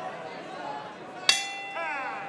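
A round bell struck once a little past halfway, its clear tone ringing on and fading: the signal that the first round is over. A murmur of crowd voices runs underneath.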